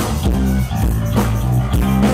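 Live band playing a funk number, with a heavy bass line, drum kit and keyboards keeping a steady beat.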